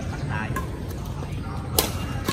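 A badminton racket striking a shuttlecock mid-rally: one sharp crack near the end, with a few fainter hits before it.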